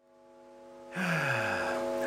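A steady drone of several held tones fades in from silence. About halfway through, a person's voiced sigh slides down in pitch over it.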